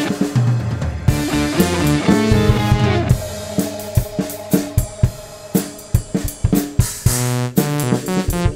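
Instrumental prog-rock fusion: a drum kit, with bass drum, snare and cymbals, plays along with electric guitar. The playing thins to spaced drum hits in the middle and comes back with a dense run of notes near the end.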